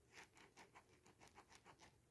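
Pen writing on paper: a faint, quick run of short scratching strokes, about five a second.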